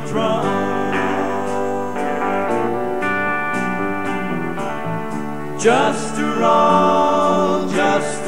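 Live electric folk-rock band playing: electric guitars over drums, with cymbal strokes keeping a steady beat.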